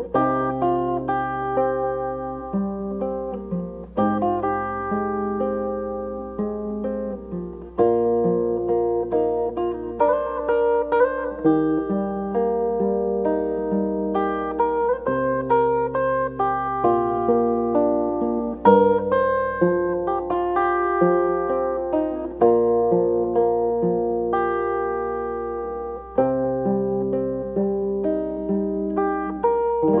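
Acoustic guitar played fingerstyle: a slow plucked melody with ringing notes over bass notes that change about every four seconds.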